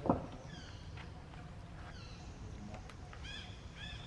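A dull thump just after the start. Then short high chirping calls come in a few scattered falling chirps and a quick run of about five arched chirps a little over three seconds in, over a steady low outdoor rumble.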